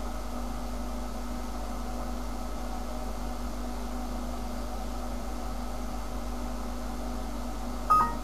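Steady low electrical hum and hiss from the recording room, with a short, sharp high beep near the end.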